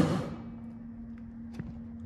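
A steady low hum in a quiet room, with two faint ticks about a second in; a louder sound dies away right at the start.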